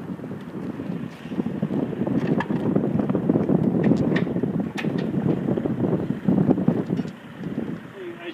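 Wind buffeting the microphone, gusting up and down and easing near the end. A few light clicks and knocks come through it as the aluminium horse trailer's tack door and rear step are handled.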